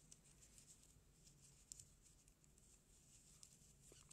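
Near silence: faint room hum with a few soft ticks and rustles from a crochet hook working cotton yarn.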